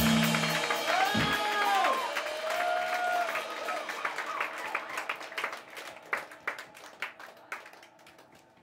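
A band's loud distorted guitar, bass and drums stop on a last chord just after the start. A small crowd then claps and gives a few whoops. The clapping thins out and fades away toward the end.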